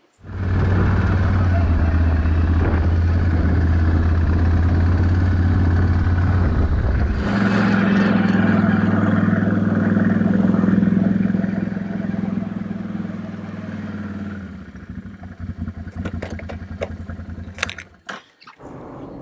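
Quad bike (ATV) engine running as it is ridden across rough moorland grass. The engine note steps up about seven seconds in and drops back at about fourteen seconds as the quad slows to a stop, with a few knocks near the end.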